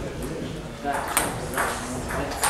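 Table tennis ball clicking in a few sharp, separate knocks off the bats and table as a point gets under way, with faint voices in the background.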